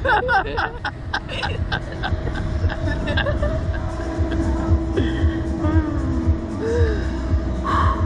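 Two riders laughing in rapid bursts, strongest in the first few seconds and fading to lighter laughs, over a steady low rumble.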